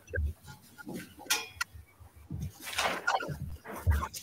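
Handling noises from the draw table: a few dull knocks and two short rustles as the draw gets under way.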